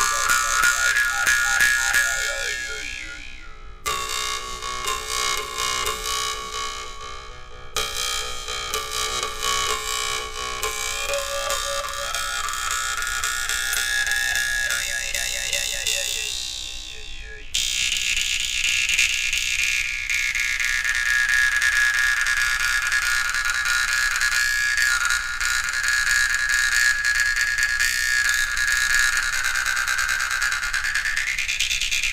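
A small Volgutov "Kudesnik" Russian vargan (steel jaw harp) played solo: a plucked, buzzing drone whose overtone melody glides up and down as the player's mouth shape changes. The drone dies down and is struck fresh about four, eight and seventeen seconds in.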